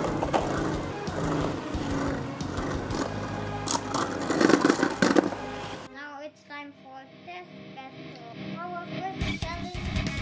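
Death Diabolos Beyblade spinning on the plastic stadium floor, a steady whirring scrape under background music. About six seconds in the spinning noise cuts off abruptly, leaving only the music.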